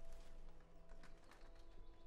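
Faint footsteps along a hallway floor: a few soft, separate steps over a low, steady room hum.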